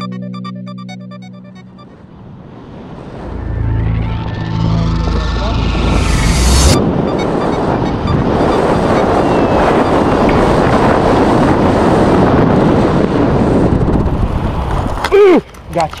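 Wind rushing over a hand-mounted camera's microphone during a tandem parachute's final approach and landing: a loud, steady noise from about seven seconds in that breaks off suddenly near the end, where a voice cries out. Background music fades out in the first two seconds.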